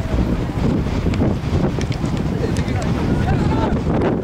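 Wind buffeting the microphone, a dense low rumble throughout, with faint distant shouts from players near the end.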